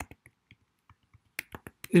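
Typing on a computer keyboard: scattered, irregular key clicks, with a quicker run of louder clicks near the end.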